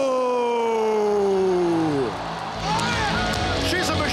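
A ring announcer's voice drawing out the winner's name in one long call that slowly falls in pitch and ends about two seconds in. Background music and crowd noise follow it.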